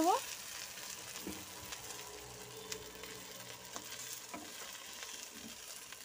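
Banana-leaf parcels of hilsa fish (ilish paturi) sizzling softly in mustard oil in an uncovered kadai, with a few faint clicks.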